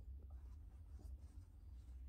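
Near silence with faint soft rubbing: a hand stroking a Boston terrier's short coat on a fleece blanket, over a low steady rumble.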